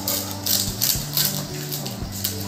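Plastic courier bag crinkling and tearing in several short crackly bursts as it is pulled open by hand, over low background music.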